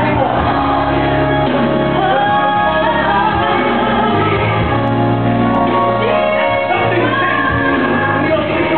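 Gospel choir singing with instrumental accompaniment, led by a soloist on a microphone.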